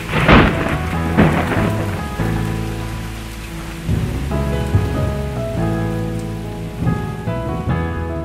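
Steady rain with thunder rumbling up loudly about half a second in and again at about a second. The rain runs under the slow, held chords of a song's intro.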